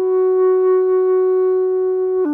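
Instrumental intro of a Chinese folk-pop song: a wind instrument holds one long, steady note.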